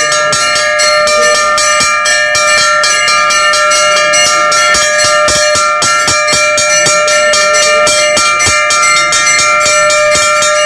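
Temple bells ringing loudly and without a break during the aarti, struck several times a second, their tones sustained and overlapping.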